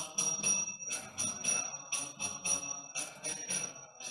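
Small brass hand cymbals (karatalas) struck over and over in a repeating devotional rhythm, the strikes falling in groups of about three, each ringing on between strikes.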